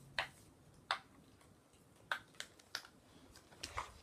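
A small plastic toy capsule clicking as fingers pry at it to open it: about six sharp clicks at irregular intervals, with a few quicker ones near the end.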